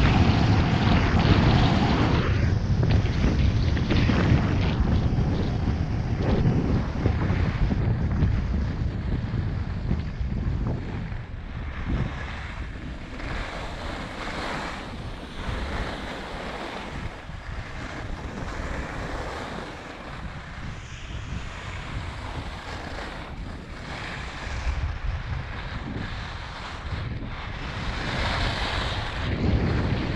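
Wind rushing over a GoPro's microphone while skiing downhill, mixed with the hiss of skis sliding over groomed snow. It is loudest at first, eases off through the middle and builds again near the end as speed picks up.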